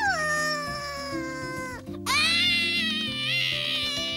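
A cartoon monkey's voice wailing in pain in two long cries: the first falls in pitch, the second rises and is held high. Background music plays underneath.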